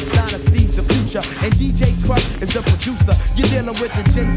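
Hip-hop track with rapped vocals over a beat and a steady bassline, played through a DJ mixer.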